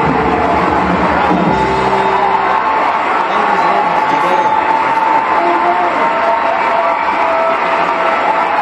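Band music with a crowd cheering and whooping, as heard through the soundtrack of old stage footage of a tap-dance performance. The lower music drops out after about three seconds while the cheering carries on.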